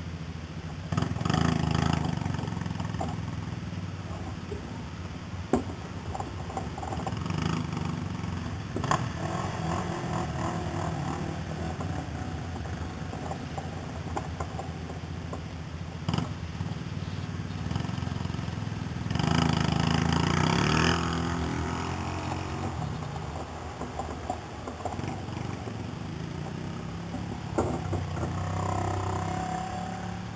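Vehicle engines running nearby in a race-track pit area, with a steady low engine note throughout. The engines swell louder twice, about a second in and again around twenty seconds in.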